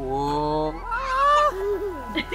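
A man's drawn-out, steady 'ooh' of mock surprise lasting under a second, followed about a second in by a short, higher voice sound that bends in pitch.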